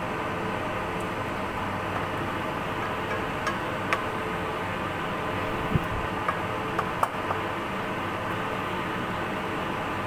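Spatula scraping and tapping against a wok several times while bamboo shoots and mushrooms are stirred, over a steady hiss from the stove.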